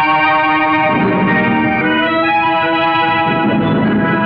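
Instrumental opening of an old Tamil film song: sustained, overlapping notes with the chords changing every second or so, no singing yet.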